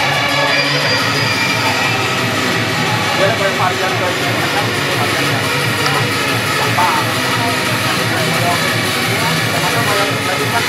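Background music with a steady beat, running unbroken at an even level.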